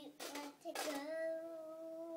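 Young girl singing: a few short syllables, then one long held note from about a second in.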